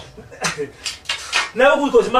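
A few short, light clattering sounds from a small object being handled. About one and a half seconds in, a voice starts speaking loudly.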